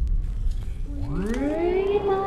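Low rumble, then about a second in a cylinder phonograph starts playing: its sound glides up in pitch from very low as the cylinder comes up to speed, levelling off into a steady note near the end.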